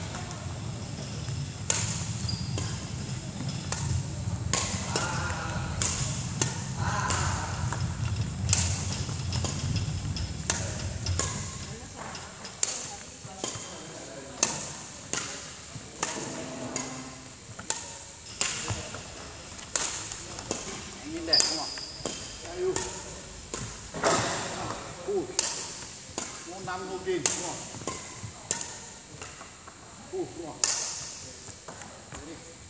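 Badminton rackets striking shuttlecocks in a repeated feeding drill: a string of sharp smacks, roughly one a second in the second half, with short voice sounds between the hits.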